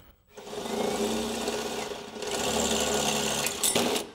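Cordless drill running a 1¾-inch hole saw into the sheet-metal firewall. The motor starts about a third of a second in, its pitch steps down about halfway through, and it stops just before the end.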